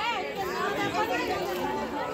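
Many people talking at once, overlapping voices of a small crowd with no one voice standing out.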